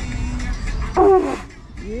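Conch shell blown as a horn: a faint steady note at first, then a short, louder blast about a second in. The blower calls himself "not a good blower".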